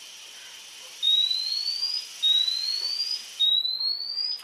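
A portable four-gas detector sounds its low-oxygen alarm: three loud, rising electronic sweeps, each about a second long, starting about a second in. It has been set off by exhaled breath blown through the sampling tube, which pulls the oxygen reading below the 19.5% alarm point. Under the first part runs a faint steady hiss of breath through the tube, which stops shortly before the end.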